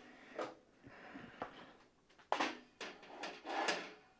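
The side panel of a Dell Precision 7810 workstation tower being unlatched and lifted off. A few light clicks come first, then a louder scraping clunk a little over two seconds in as the panel comes free, then more short knocks and a brief scrape.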